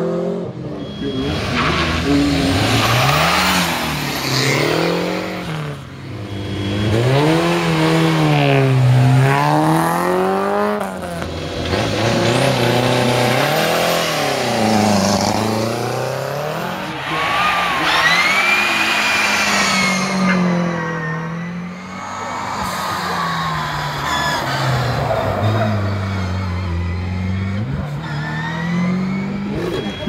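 Competition cars' engines revving hard up a hill climb, the pitch climbing and dropping again and again as the drivers shift gear and brake for the bends. Several cars pass one after another.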